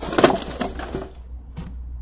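Handling noise from the phone's microphone as a hand or arm brushes across it: a rough rustling scrape for about a second, then a couple of faint clicks, over a steady low hum.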